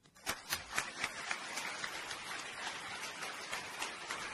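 Audience applauding: a few separate claps about a quarter second in quickly thicken into steady applause.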